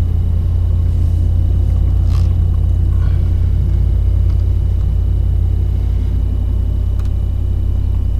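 2009 Dodge Ram 1500's 5.7-litre Hemi V8 with dual exhaust idling after being started, a steady deep rumble heard from inside the cab.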